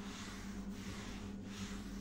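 Cloth wiping foamy spray cleaner off a smooth cabinet door: soft, uneven rubbing swishes, over a steady low hum.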